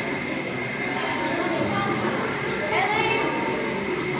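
Murmur of many people's voices over a steady high-pitched hum, with a brief rising squeal about three seconds in.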